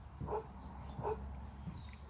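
Two short animal calls, about three-quarters of a second apart.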